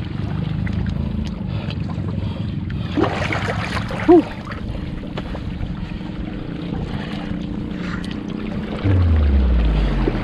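Shallow seawater sloshing around the legs of someone wading over rocks, under a steady low hum. A brief voice sound comes about four seconds in, and a louder low rumble, falling in pitch, comes near the end.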